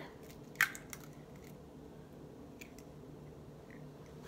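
A raw egg broken open by hand over a plastic bowl: one short crack about half a second in as the shell comes apart and the egg drops in, then only a few faint small ticks.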